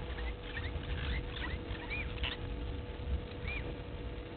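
Small bird chirps: a quick run of short, high squeaky calls in the first half, then two single rise-and-fall peeps a little apart, over a low steady rumble.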